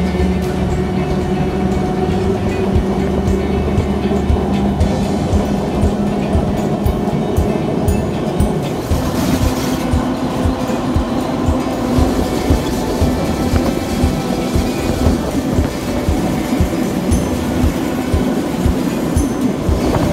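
Train running on track, its wheels clicking rhythmically over rail joints over a steady running hum that changes pitch about eight seconds in.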